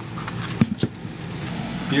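Cordless drill-driver running steadily as it backs a screw out of a wooden mould frame, with two sharp clicks a little past halfway.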